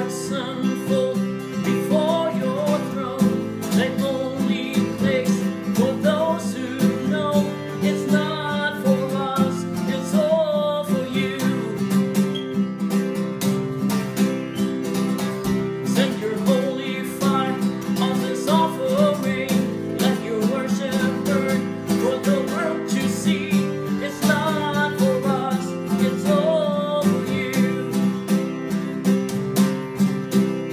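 Steel-string acoustic guitar strummed in a steady rhythm, with a man singing a melody over it.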